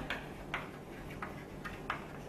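Chalk writing on a chalkboard: a few short, sharp taps and scratches as the strokes go down, over a faint steady room hum.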